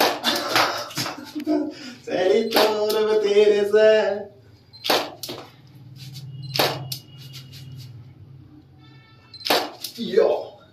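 A man talking and laughing for the first four seconds, then three sharp clicks spread over the rest, with a low hum beneath.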